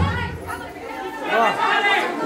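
Dance music cuts out, leaving a group of people chattering in a large room, with one voice rising and falling near the end.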